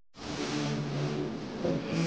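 Intro soundtrack starting suddenly: a loud rushing whoosh with steady low tones beneath it.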